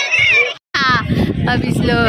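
High-pitched voices calling out. The sound breaks off abruptly about half a second in, then resumes with a long falling high call and more voices.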